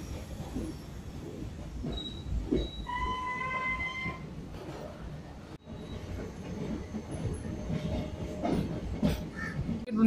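DEMU passenger train running along the track, heard from inside a coach: a steady low rumble with irregular knocks from the wheels. About three seconds in, a held high tone sounds for about a second.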